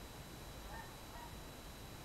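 Quiet room tone: a low steady background hiss, with a faint brief tone near the middle.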